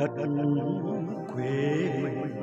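A man singing into a microphone over a karaoke backing track, his voice coming in strongly right at the start over steady held accompaniment.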